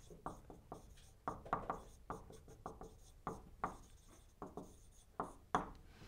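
Whiteboard marker writing on a whiteboard: a quick, irregular run of short squeaks and taps as each letter is stroked onto the board.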